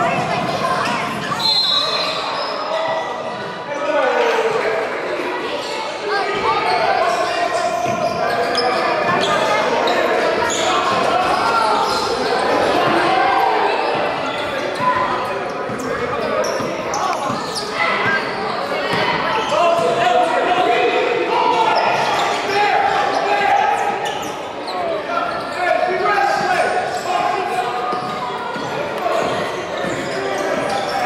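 Basketball bouncing on a hardwood gym floor, with many voices talking throughout, echoing in a large gymnasium.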